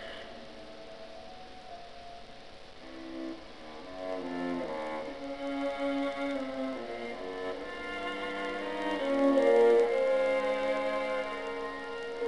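Chamber music with bowed strings, violin and cello, holding long sustained notes, played back from a tape recording. It is quiet at first, swells from about three seconds in, and is loudest near ten seconds.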